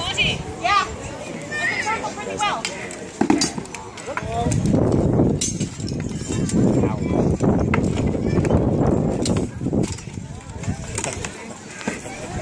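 Sparring bout: weapons knocking against a round shield, several sharp knocks spread through the stretch, with scuffling footwork on grass. A long stretch of dull rumbling noise fills the middle.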